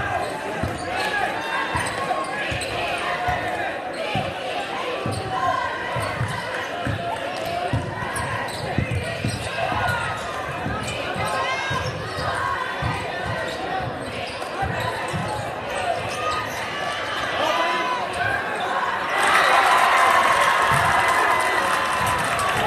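A basketball being dribbled on a hardwood gym floor, short repeated thuds under the murmur of a crowd in a large echoing gym. Near the end the crowd noise swells as play breaks the other way.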